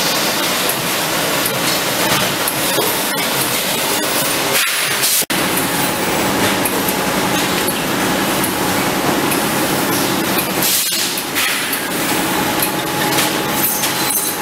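Bottling-plant machinery running: a loud, dense, steady clatter with glassy or plastic clinks mixed in, cutting out for an instant about five seconds in.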